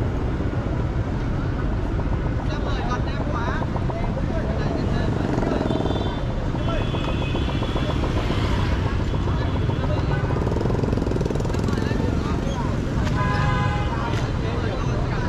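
Urban street ambience of motorbike and scooter traffic: a steady engine and road rumble with people's voices in the background, a scooter passing close about eight seconds in, and a short horn toot near the end.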